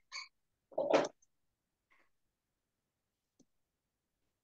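A brief sound from a person's voice about a second in, followed by a few faint clicks.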